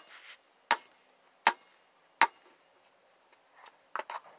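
A basketball bounced three times at an even pace, each a sharp knock, then a shorter knock near the end as the shot strikes the backboard.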